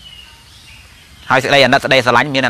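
A man speaking in Khmer, starting after a pause of just over a second with only faint background noise.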